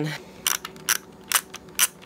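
Fujifilm disposable camera's film-advance thumbwheel being wound on after a shot, its ratchet clicking about twice a second, four clicks in all.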